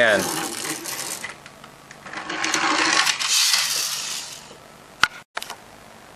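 A plastic toy motorcycle on a pullback spring-motor roller, wound by dragging it back across a wooden tabletop with a rapid clicking, then released to whir along and pop up into a wheelie. The whirring is loudest in the middle of the clip, and a sharp click comes near the end.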